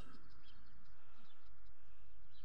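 Outdoor background: a steady low rumble with a few faint, short bird chirps.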